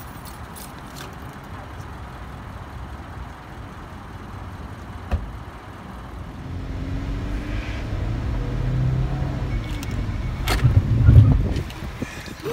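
A car's engine running: a low rumble that grows louder and steadier from about halfway through, with a sharp click about five seconds in and a loud knock near the end.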